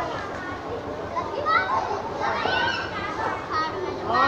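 A group of children's voices chattering and calling out over one another, high voices rising and falling.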